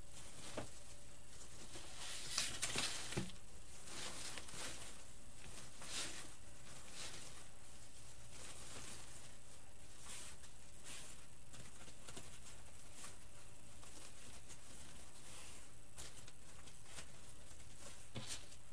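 Wired ribbon and artificial pine sprigs rustling and crinkling in short bursts as a bow is shaped by hand, busiest about two to three seconds in. A faint steady electric buzz from a hot-glue pot runs underneath.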